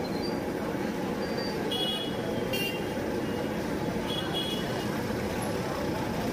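Steady street traffic noise around a roadside food stall, with a few short high-pitched squeaks about two, two and a half and four seconds in.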